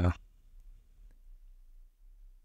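A spoken word trails off at the very start, then a quiet room with a few faint clicks from computer input as code is being edited.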